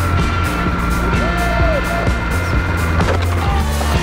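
Background music with a steady beat over the rolling rumble of a small robot car's wheels on asphalt, picked up by a camera mounted on the car.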